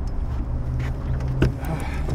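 Boat's motor running steadily with a low hum, and a single sharp knock about one and a half seconds in.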